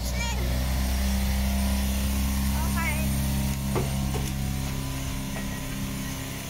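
A train standing at the platform with a steady low hum. A short voice is heard partway through.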